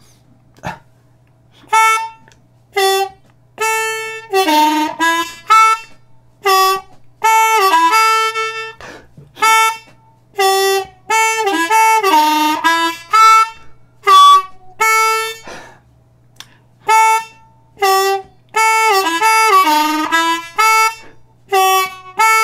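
Ten-hole diatonic harmonica in D played slowly as a blues phrase using only draw notes on holes 1 and 2. The 2 draw is bent a whole step and the 1 draw is bent, so several notes sag in pitch and come back up. The notes come in short phrases with brief gaps between them.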